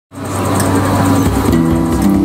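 Street band music fading in at the very start, held low notes at a steady pitch that begin to move to new notes about one and a half seconds in.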